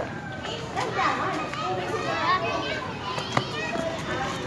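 Children playing, many young voices calling and chattering over one another, with a single sharp click a little over three seconds in.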